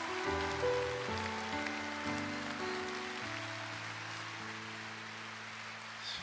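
Grand piano playing a slow ballad introduction: soft chords changing about once a second, then one chord held and slowly fading over the last few seconds.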